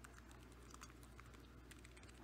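Faint, irregular keystrokes on a computer keyboard as a terminal command is typed.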